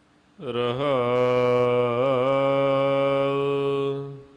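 Sikh Gurbani kirtan: a singer holds one long sung note with wavering ornaments, over a steady harmonium drone. It begins about half a second in, after a near-quiet pause.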